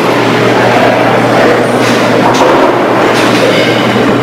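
Steady, loud background noise with a low hum and a few faint clicks.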